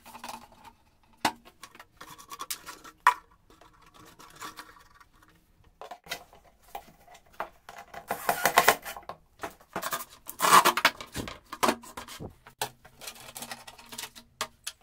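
Hard plastic canister being handled, with clicks and knocks as its lids are closed, then a cordless drill driving screws through the plastic wall in two short runs, about eight and ten seconds in.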